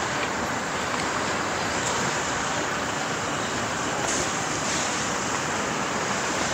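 Steady, even rushing outdoor noise, such as distant traffic and wind, with a few faint clicks.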